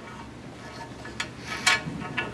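A few light clicks and taps of a small workpiece being handled against a scroll saw table, over low room noise.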